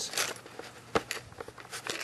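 A handful of short clicks and knocks from handling, the sharpest about a second in.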